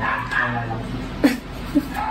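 A small dog yipping twice: short, sharp cries about half a second apart, starting just past a second in.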